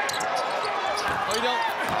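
Live basketball game sound: the ball being dribbled and sneakers squeaking on the hardwood court, under steady arena crowd noise and voices.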